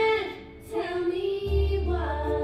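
A young girl singing solo into a microphone with musical accompaniment; a low, steady bass note comes in about one and a half seconds in.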